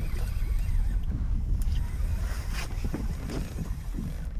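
Steady low rumble of wind on the microphone aboard an open fishing boat on the water, with a few faint clicks.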